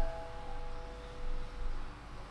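Soft background piano music: a held chord slowly dying away.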